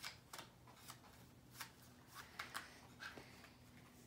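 A deck of playing cards being overhand shuffled by hand: a string of faint, irregular soft clicks and taps as small packets of cards drop from one hand onto the other.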